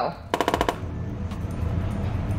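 A quick rattling burst of about ten sharp clicks lasting about half a second, over quiet background music.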